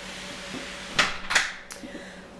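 Two short knocks about a third of a second apart, about a second in, over a faint steady hum.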